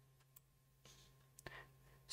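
Near silence with a faint short click about one and a half seconds in.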